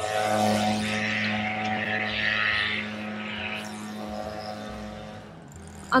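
Steady engine drone of a passing vehicle in city traffic, loudest at first and fading away over about five seconds.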